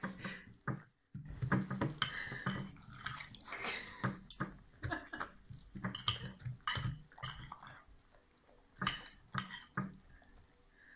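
A metal fork and spoon clinking and scraping irregularly against a ceramic bowl of food, mixed with a Basset hound chewing and smacking as it eats from the spoon.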